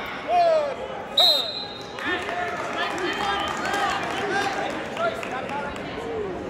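A short, loud, high whistle blast about a second in, signalling the end of the sudden-victory period. It is heard over shouting from the crowd and coaches in a gym.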